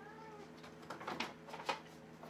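A cat gives a short, soft meow, followed by a few light clicks and knocks of handling.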